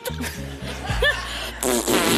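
Studio audience laughing over a steady background music bed; the laughter swells about one and a half seconds in.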